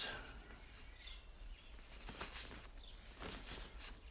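Quiet outdoor background with faint rustling of leek leaves being handled at the base of the plant.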